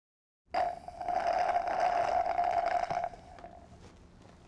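Logo ident sound effect: a sudden onset about half a second in, then one steady held tone over a hissing, airy wash, which fades away after about three seconds.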